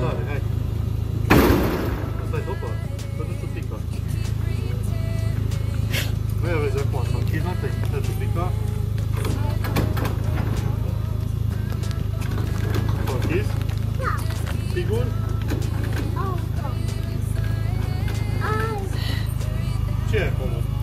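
Steady low hum of a parked car's engine idling, with a loud knock about a second in and a small child's short vocal sounds scattered through it.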